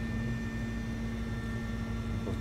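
Spindle of a 1994 Mori Seiki MV-40B vertical machining centre running steadily at about 4,000 RPM: an even hum with a thin, high, steady whine.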